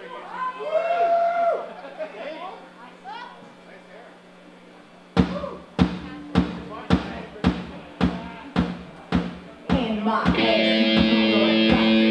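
Live rock band starting a song: after a few seconds of voices talking over a low steady hum, a drum kit begins a steady beat about two hits a second about five seconds in, and guitars and bass join with held chords about ten seconds in.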